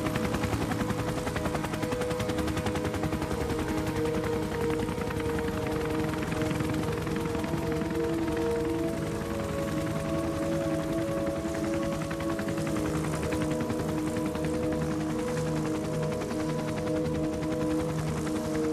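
Rapid, steady chopping of a helicopter's rotor blades, heard under music of long held notes.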